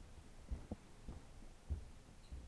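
Soft, low, muffled thuds in a steady pulse, about one every half second, some falling in close pairs.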